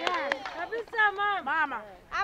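Speech: a person talking in short phrases, quieter than the surrounding address.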